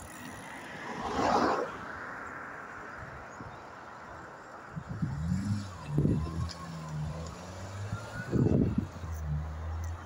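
Road traffic: a rush of noise from a passing vehicle about a second in, then a low engine hum from about halfway, with a short rising pitch and two louder low thumps.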